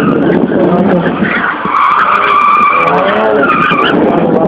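A car's tyres squealing in long, wavering screeches as it is driven hard through tight slalom turns, with the engine revving underneath.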